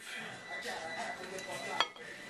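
A single sharp clink of a utensil against a ceramic dish near the end, over faint table noise.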